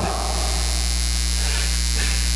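Steady electrical mains hum, one constant low pitch with many evenly spaced overtones.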